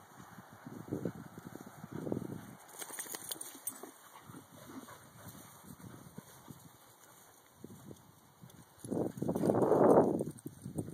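Dogs playing on grass, with short irregular bursts of sound and a louder, longer one about nine seconds in.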